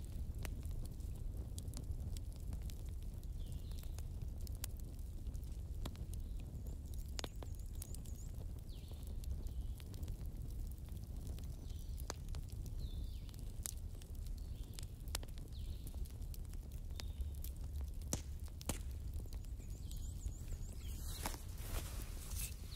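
Wood fire in a fireplace crackling: scattered sharp pops and snaps over a low steady rumble.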